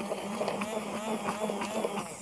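bamix hand blender with its aerating disc running steadily, submerged in a jug of whipped skim milk and fresh berries, with a constant low motor hum.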